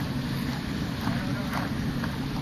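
Wind buffeting the camera microphone: a steady low rumble with no distinct events.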